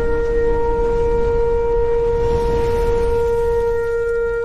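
A long, steady horn-like note held over a low rumble and rising hiss: a logo-reveal sound effect.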